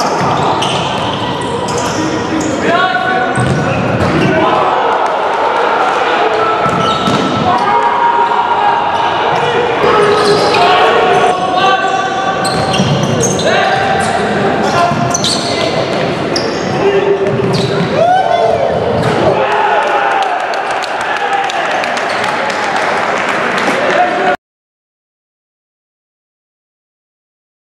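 Live indoor futsal: players' shouts and calls mixed with sharp thuds of the ball being kicked and bouncing on the court, echoing in a large sports hall. The sound cuts off abruptly a little before the end.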